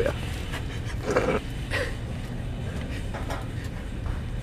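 A young man says "yeah", then gives two short breathy laughs about a second in, over a steady low background hum.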